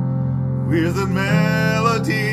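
Worship song playing: a held instrumental chord, with a singer coming in about two-thirds of a second in on a long, wavering note.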